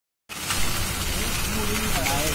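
Three-roll plate bending machine running as it rolls a steel plate, a steady, noisy mechanical rumble with a strong low hum.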